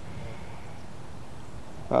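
Steady, faint outdoor background noise, a low rumble with no distinct event; a man's 'Oh' starts at the very end.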